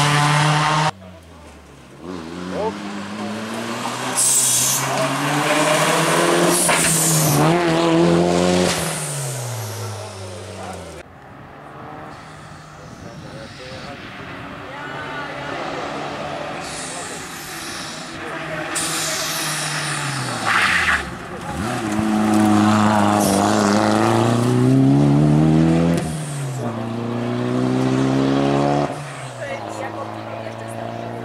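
Toyota Celica GT-Four ST205 rally car's turbocharged four-cylinder engine revving hard through the gears as it drives by, its pitch climbing and dropping again and again with each upshift and lift for a corner. The sound comes in several short passes broken by sudden cuts.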